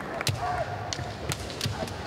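Kendo fencers' bamboo shinai knocking together and bare feet stamping on a wooden floor: several sharp clacks and thuds in an irregular series as the two close in.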